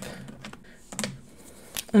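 A few light clicks of marker pens being handled and swapped, one about a second in and another just before the end.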